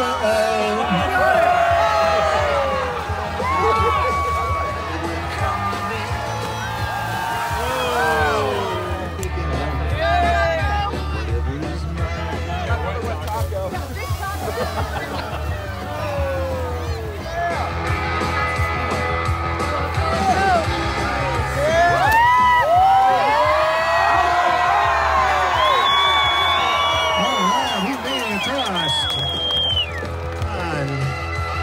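A large outdoor crowd cheering, whooping and shouting, with many voices rising and falling together, loudest about 22 to 26 seconds in. Music with a steady bass line plays underneath.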